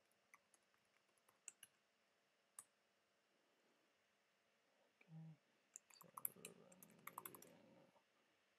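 Faint keystrokes on a computer keyboard: scattered single key clicks in the first few seconds, then a quick run of typing near the end. A brief low hum comes about five seconds in.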